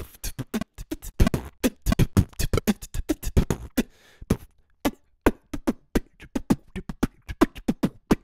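Recorded human beatbox groove played back: mouth-made kick, snare and hi-hat sounds in a fast rhythm, with a brief lull about four seconds in. The beatboxer's timing is a little inaccurate, not locked to a steady grid.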